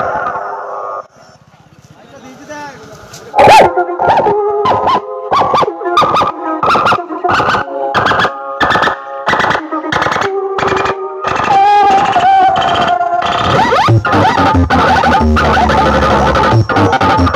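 Music playing loud through a DJ sound system of horn speakers stacked on box cabinets, under test. The track drops out about a second in and comes back about three seconds in with a choppy beat of about two pulses a second. Deep bass joins near the end.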